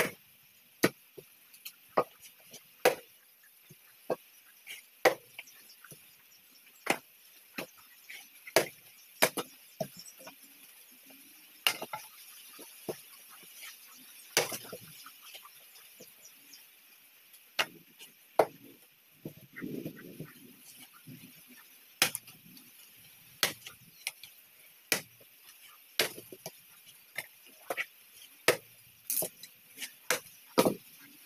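A hand blade chopping firewood, splitting pieces into kindling: sharp wooden chops at an irregular pace, roughly one a second, some harder than others. Around two-thirds of the way through, the chopping pauses briefly for a rustle of wood being handled, over a steady faint high hiss.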